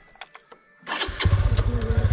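A motorcycle engine starts about a second in and then runs at idle with a rapid, even pulsing.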